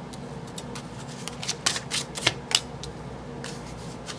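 Oracle cards being drawn from the deck and laid down on a cloth-covered table: a scattered series of short card flicks and taps.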